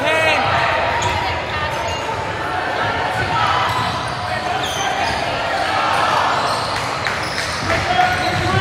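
Basketball gym sound: a crowd and players chattering, with a basketball bouncing on the hardwood floor, echoing in the hall.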